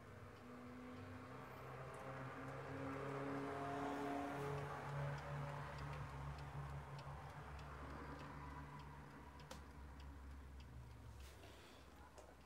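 Steady ticking of a Herweg twin-bell alarm clock, faint and evenly spaced. Under it runs a low hum with some soft held tones that swell and fade in the middle.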